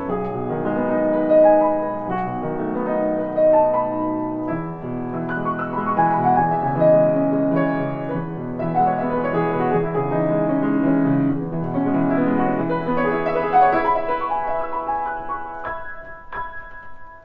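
Grand piano played solo: a flowing passage of chords and melody with sustained notes, growing quieter near the end as the piece closes.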